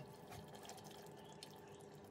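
Near silence: a faint steady hum with faint, soft bubbling from the cauliflower stew simmering in the open pot.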